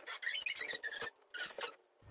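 Faint, scattered high-pitched squeaks and clicks from small objects being handled: a phone and a small balancer disc on a padded treatment table.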